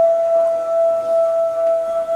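Chinese di (bamboo flute) holding one long, steady note, with a fainter lower tone sounding beneath it.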